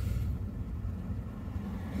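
Steady low rumble of a Mercedes-Benz car's engine and tyres, heard inside the cabin while driving slowly.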